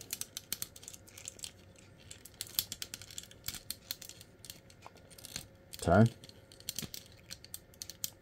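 Small plastic clicks and clacks of an MFT F-03 42-SolarHalo transformable robot figure's joints and parts as it is handled and its arm is repositioned, coming irregularly, many in quick succession.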